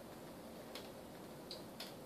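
Low room tone with three faint, irregular clicks.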